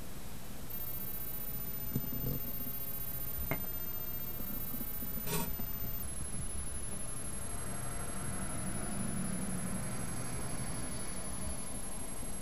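Room tone through a webcam microphone: a steady hiss, with three faint clicks from handling a phone and glasses, about two, three and a half and five seconds in.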